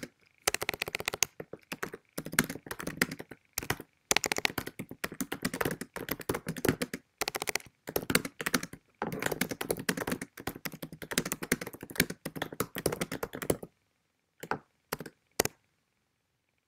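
Rapid clicking and tapping of a laptop keyboard, in dense runs. The typing stops about two seconds before the end, followed by three short single clicks.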